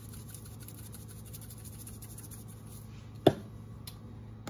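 Italian seasoning shaken faintly from a plastic shaker bottle over raw chicken thighs, with a single sharp click about three seconds in, over a low steady hum.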